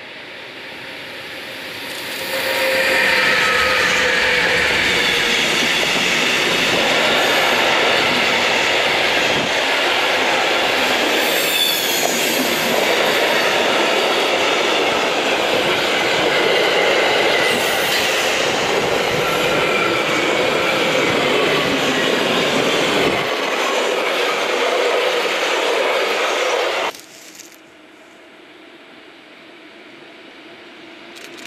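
An electric-hauled freight train of tank wagons and car-carrier wagons rolls past close by on a curve. Its wheels rumble and rattle over the rails, with thin squealing tones from the wheels. The loud passing sound builds over the first couple of seconds, holds, then cuts off suddenly near the end.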